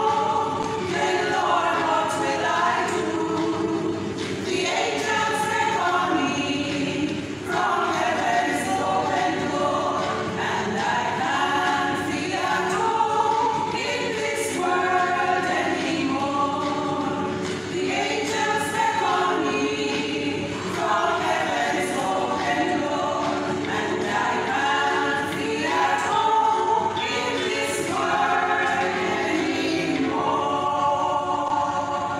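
A women's choir of about eight voices singing together a cappella.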